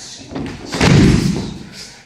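A person thrown with sumi gaeshi landing on the dojo mat: a loud, heavy thud about a second in, with the rustle of the uniforms around it.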